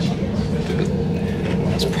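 Steady low rumble of a passenger train carriage in motion, heard from inside the carriage, with a steady drone through it.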